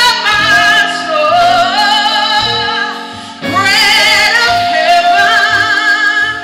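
A woman singing a gospel worship song into a microphone, holding notes with a wide vibrato, over keyboard accompaniment. She breaks off briefly about three seconds in, then comes back on a higher held note.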